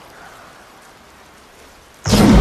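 Quiet, steady ambient hiss from a film soundtrack, an even rain-like wash with faint flickering crackle.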